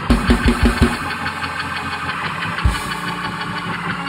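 Church organ holding a sustained chord, with a quick run of about five low hits in the first second and one more a little before the three-second mark.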